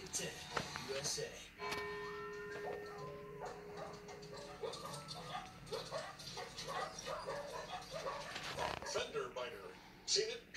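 Television audio playing in the room: a commercial's music and indistinct voices, with one note held for about three seconds starting near two seconds in.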